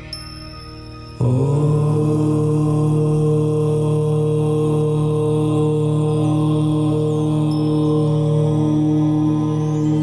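A low voice chanting 'Om' as one long, steady held note that sets in suddenly about a second in, over soft ambient meditation music.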